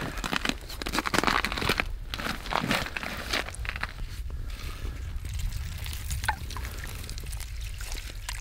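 Ice shavings and slush crunching and sloshing in an ice-fishing hole as an artificial weed is pushed down into it: irregular scrapes and crunches that thin out about halfway through, with a few light clicks near the end.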